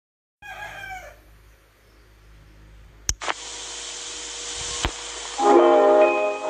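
Hiss of an old film soundtrack broken by two sharp clicks, then a jingle's music starting near the end, the loudest part. A brief falling pitched call comes near the start.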